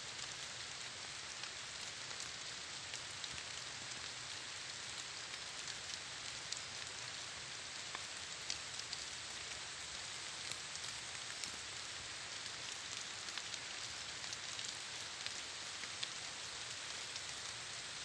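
Light rain falling on vegetation: a steady, even hiss with scattered faint ticks of drops.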